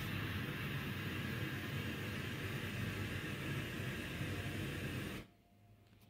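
Steady rumbling noise with a hiss over it: a space 'sound' recording presented as the sound of an unknown moon of Jupiter. It cuts off suddenly a little after five seconds in.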